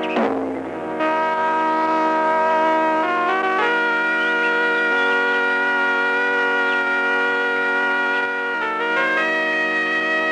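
Film soundtrack music of long held chords that shift every second or few, with a short sweeping flourish in the first second.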